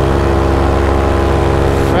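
Paramotor's two-stroke engine and propeller running at steady flight throttle, the engine pitch rising slightly over the two seconds.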